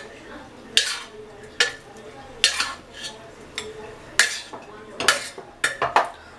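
Metal spoon scraping and clinking against the inside of a stainless steel pressure cooker as cooked rice is stirred and mixed, in about seven separate strokes at irregular intervals.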